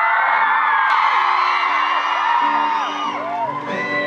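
Concert audience screaming and cheering between songs, many overlapping high-pitched shrieks. About two and a half seconds in, steady held instrument notes start up under the screams.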